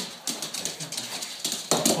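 Soft-coated wheaten terrier excitedly greeting a person, its claws clicking and scrabbling on a hard floor, with a louder burst of sound near the end.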